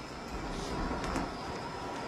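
Car engine running low as the car rolls slowly forward, a steady low rumble.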